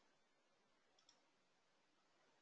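Near silence: faint room tone, with one faint click of a computer mouse button about a second in.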